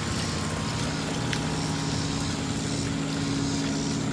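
Steady mechanical hum of a running motor, even in pitch and level, with a faint hiss over it.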